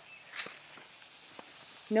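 Footsteps on a dirt path strewn with dry leaves and twigs, with a brief rustle about half a second in and a faint tick or two after.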